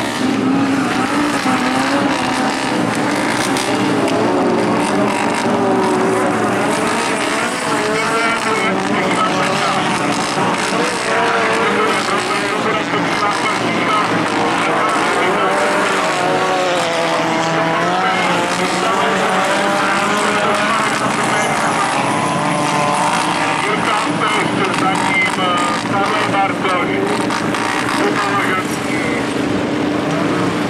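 Engines of several autocross race cars revving up and down together as they drive the dirt track, their pitch rising and falling continually.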